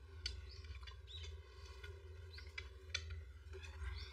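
Quiet room ambience with faint, short high bird-like chirps, a few soft clicks and a low steady hum underneath.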